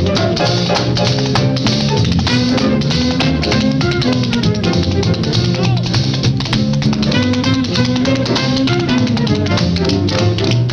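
Up-tempo jazz band music with drum kit and brass, dense with sharp clicks and hits throughout.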